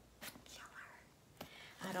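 A quiet pause filled with soft, breathy, whisper-like mouth and breath sounds from a woman, with a single sharp click about a second and a half in; her speaking voice starts just at the end.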